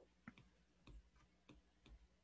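Faint, irregular clicks of a stylus tip tapping and dragging on an iPad Pro's glass screen during handwriting, about half a dozen over two seconds.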